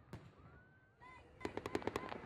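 Fireworks: a single bang just after the start, a rising whistle, then from a little past halfway a fast string of crackling reports, several a second.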